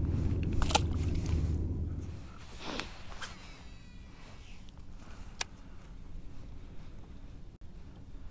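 Low rumble of handling with a sharp click, then a short splash about three seconds in as a small fish is let go back into the water; after that only a faint background with a single click.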